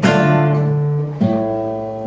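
Classical guitar playing a slow minor-key chord progression: a chord strummed at the start and left to ring, then a change to another chord about a second later.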